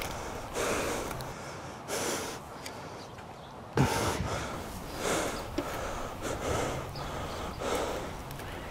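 Hard, winded breathing from spent wrestlers, a breath every second or two, the sharpest about four seconds in.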